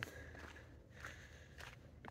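Faint footsteps of a person walking, soft irregular steps.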